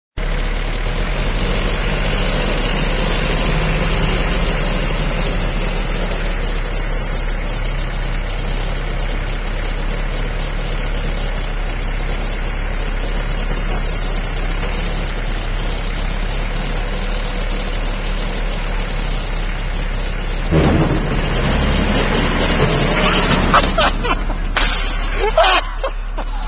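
A steady drone of an engine or heavy machinery running with a low hum. About twenty seconds in it gets suddenly louder, and a few sharp knocks follow near the end.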